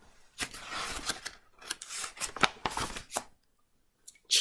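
Picture book page being turned: paper rustling with several crackles, stopping about three seconds in.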